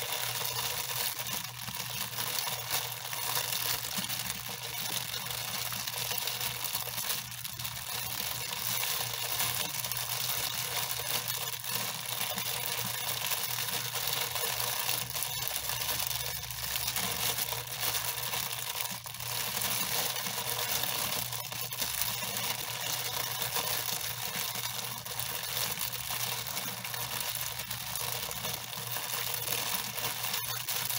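Hands scrunching and rubbing soapy lather through long wet hair, a steady fine crackling and squishing that runs on without a break.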